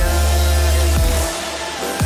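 Electronic dance music with a heavy, sustained bass and falling pitch slides; the bass drops away for a moment in the second half.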